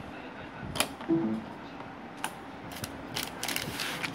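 Small plastic clicks and knocks of a USB cable plug being pulled and handled around Arduino boards. They are scattered at first, then come as a quick cluster of clicks with a rustle near the end.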